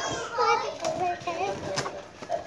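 A young girl's high voice in short phrases, with a couple of light taps.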